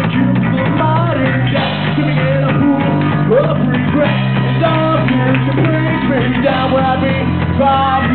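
A small rock band playing live: a voice singing over guitar, with low held notes underneath and no break in the music.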